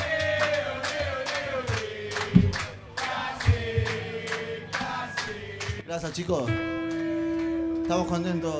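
Live rock band playing: steady drum hits with electric guitar, bass and a sung melody. About six seconds in, a rising glide leads into a long held chord that rings on steadily.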